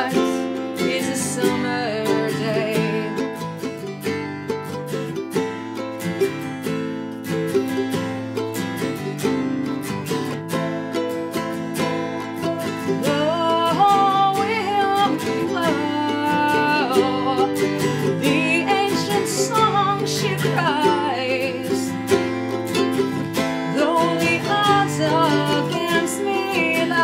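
Instrumental passage of a Celtic-style ballad: a Taylor acoustic guitar strumming and a ukulele playing together, with a woman's wordless singing carrying the melody over part of it.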